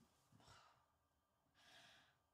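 Near silence with a woman's faint breathing: a short breath out about half a second in and an intake of breath near the end.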